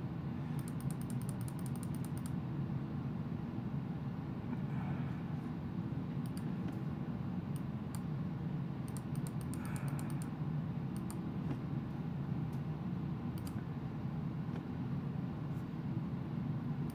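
Computer keyboard keys tapped in short runs, a quick string near the start and another about nine to ten seconds in, with scattered single clicks between, over a steady low hum.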